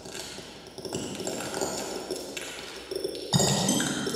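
Electronic music of layered pinging tones, with held high notes stacking up and a louder low drone entering suddenly about three seconds in.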